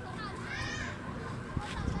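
Children's voices in the background outdoors, with one brief high-pitched call about half a second in. A few soft low knocks come near the end.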